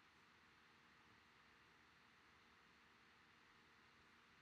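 Near silence: faint steady room tone and microphone hiss.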